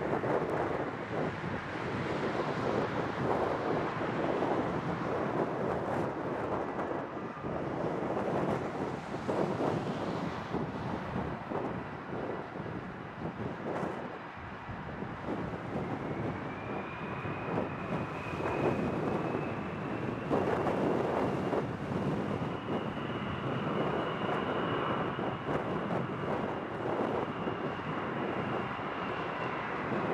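F/A-18F Super Hornet's twin General Electric F414 turbofans running at taxi power: a steady jet rush, joined about halfway through by a high whine that rises slightly and then holds. Wind buffets the microphone.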